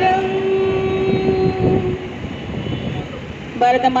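Conch shell (shankha) blown in a long, steady horn-like note that fades out about two seconds in.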